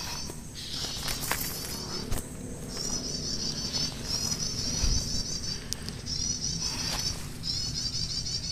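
Bursts of high, rapid, wavering trilled bird calls, each about a second long, repeating every second or so, typical of the prenjak (a small tailorbird/prinia-type warbler) used as the lure call in bird trapping.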